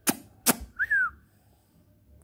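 Two sharp knocks about half a second apart from a hand handling the furry windscreen of a Boya microphone. Just after them comes a short, falling whistle-like chirp.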